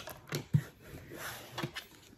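Tarot cards being handled and drawn from the deck: a few light snaps and flicks of card stock, most of them in the first second and one more later.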